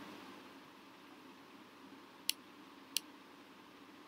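Two sharp computer mouse clicks about two seconds in, roughly 0.7 s apart, over faint room hiss.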